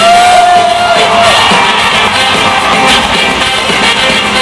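Live rock band with a horn section playing in a large hall, heard from among the audience, which sings and shouts along. A single high note is held for about a second at the start.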